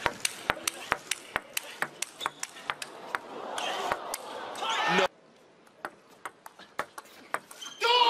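Table tennis rally: the celluloid ball ticking quickly off rackets and table, about four to five hits a second. Then the crowd cheers and shouts, rising until it cuts off suddenly about five seconds in, leaving a few faint ball taps.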